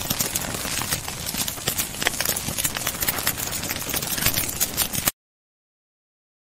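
Food frying in a pan, sizzling with a dense crackle of pops and spits that cuts off suddenly about five seconds in.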